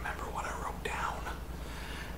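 A man whispering, his words unclear, over a faint steady low hum.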